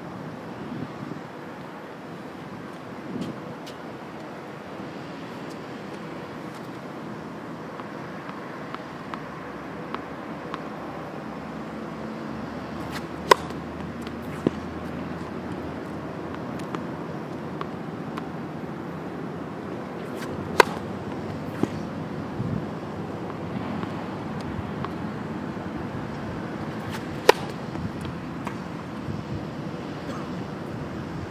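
Tennis racket striking the ball three times, about seven seconds apart, each a sharp crack; after the first two a softer knock follows about a second later. A steady outdoor hiss runs underneath.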